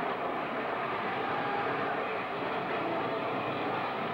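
Live hardcore punk band and crowd on a lo-fi audience recording, smeared into one steady, dense wash of noise with no clear notes or words.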